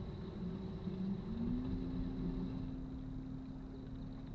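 Electric trolling motor running steadily, its hum stepping up in pitch about a third of the way in as the speed is turned up, over a low rumble of wind and water.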